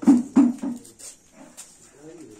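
A dog barking in a quick run, three loud barks about a third of a second apart in the first second, then a couple of fainter ones.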